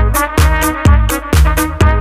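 Electronic house music from a DJ mix: a steady four-on-the-floor kick drum at about two beats a second, with hi-hats and a pitched melodic line over it.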